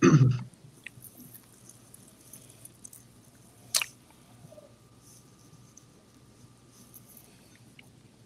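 A man clears his throat at the very start. Then it goes quiet, with faint mouth sounds as bourbon is sipped from a glass and one sharp click about four seconds in.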